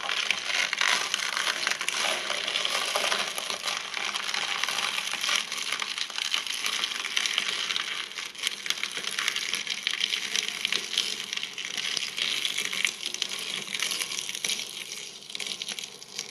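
A shredder crushing its load: a dense, continuous crackle of crunching and snapping that dies away near the end.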